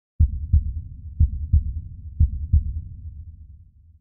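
Heartbeat-style intro sting: three pairs of deep double thumps, lub-dub, about once a second, trailing off into a fading low rumble in the last second.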